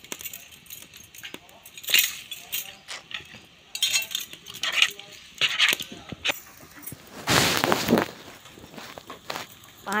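A metal ladle stirring dal in a steel pot, with scattered clinks and scrapes against the metal, and a louder noisy stretch of under a second about seven and a half seconds in.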